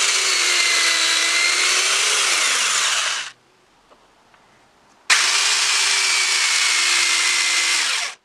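Restored Black & Decker DNJ 62 corded electric drill boring into a wooden block, run twice for about three seconds each with a short pause between. Its motor whine dips a little under the load of the cut.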